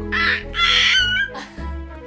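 A toddler's two short, high-pitched squeals in the first second, over background music with steady sustained notes.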